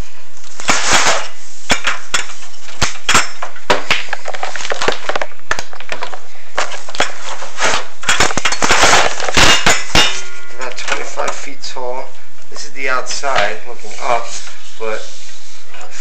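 Inspection camera and its push rod scraping and knocking against the inside of a metal stovepipe flue, loud rapid irregular clicks and clatter for about ten seconds. After that a person's voice is heard.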